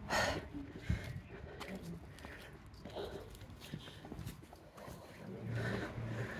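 Quiet outdoor ambience of walking along an alley: faint footsteps and scattered distant voices. A low steady hum comes in about five and a half seconds in.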